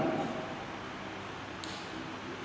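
A pause in a man's talk over a microphone: the echo of his last word fades in the hall, leaving steady low room tone, with one faint short click past the middle.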